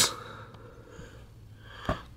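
Quiet pause in speech with faint room noise, broken by a single brief low thump just before the end.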